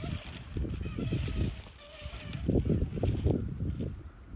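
A Garden Weasel nut gatherer's wire cage rolling and rustling through lawn grass as it scoops up green-husked walnuts. The irregular rustling and knocking is heaviest in the second half.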